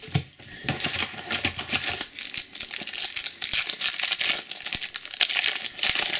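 Foil wrapper of a Topps Match Attax trading-card pack crinkling and tearing as it is opened by hand, a continuous dense crackle starting just under a second in.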